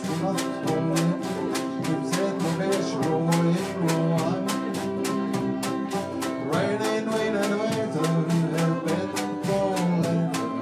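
Live band playing an uptempo instrumental passage on double bass and fiddle over a steady beat of about four hits a second.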